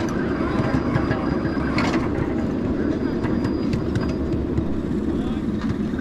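Ridable miniature train rolling along the track: a steady low rumble of wheels on rail with a few light clicks.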